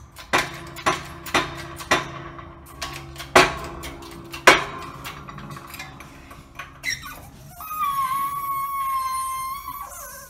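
Hydraulic bottle jack on a shop press pumped by hand, its handle strokes clicking sharply about twice a second for the first few seconds. Near the end, a steady high squeal of metal under load lasts a couple of seconds as the press pushes the hub into the new wheel bearing.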